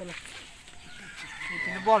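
Rooster crowing faintly, one drawn-out call in the second half.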